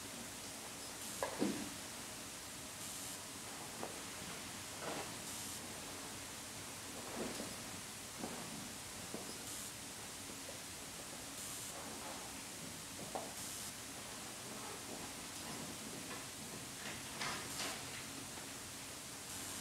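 Quiet room with a steady hiss and scattered faint rustles and small knocks every second or two, a few close together near the end: people handling and marking paper quizzes.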